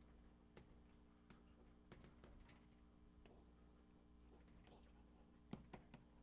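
Chalk writing on a blackboard: faint, scattered taps and scratches of the chalk stroking out words, with a few sharper taps near the end. A faint steady room hum lies underneath.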